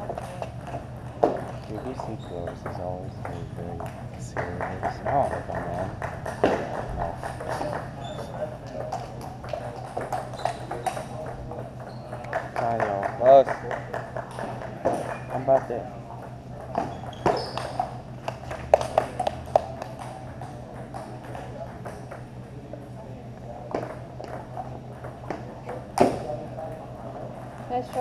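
Table tennis rallies: a ping-pong ball clicking sharply off paddles and table in quick exchanges, with pauses between points. Voices chatter in the background over a steady low hum.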